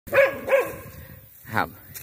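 A Thai Ridgeback barking twice in quick succession: an alert bark at something in the yard that the owner takes to be a snake.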